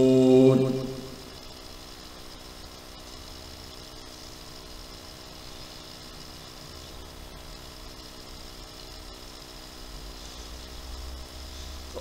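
A male reciter's chanted Quran verse, ending 'yunfiqun', trails off about a second in. A faint steady hum with several held tones fills the pause that follows.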